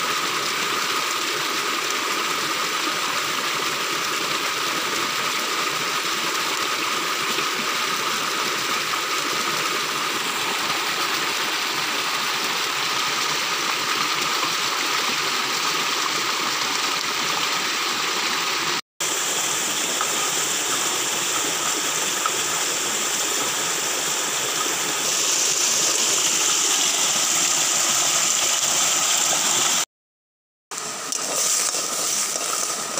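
Steady rushing of a flowing stream, broken once by a split-second dropout and growing a little louder and brighter near the end.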